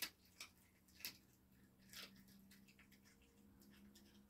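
Near silence, with a few faint clicks and a faint low steady hum.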